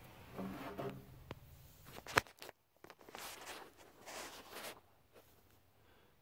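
Quiet rustling and shuffling from a person moving and handling the camera, with one sharp click about two seconds in and a few fainter clicks.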